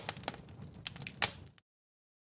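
The fading tail of an explosion-and-fire sound effect: a low rumble dying away with a few sharp crackles, then cut to dead silence near the end.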